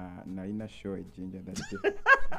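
Quiet, indistinct speech from a man's voice close to a microphone, with a higher, sliding vocal sound near the end.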